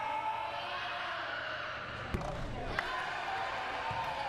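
Gym crowd murmur with two short thuds about two seconds in, less than a second apart, from a basketball bouncing on the hardwood court.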